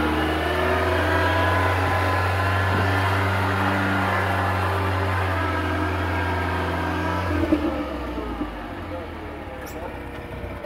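Lifted Toyota pickup truck's engine running steadily at low revs as it crawls up a dirt trail. About seven seconds in the engine note drops with a brief thump, and the sound then fades as the truck pulls away.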